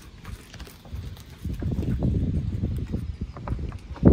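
A horse's hooves thudding on the arena surface as it goes by close at hand: a run of dull, irregular footfalls, quieter at first and louder from about a second and a half in.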